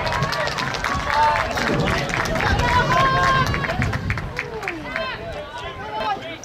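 Several voices shouting at once across an outdoor soccer field, with players and spectators calling out during play.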